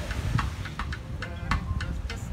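Small live band playing: a drum struck with sticks in quick, even strokes, over low notes from a plucked upright double bass.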